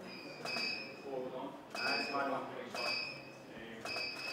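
A camera shutter firing about once a second, four shots in all, each followed by a short high beep, with faint voices between the shots.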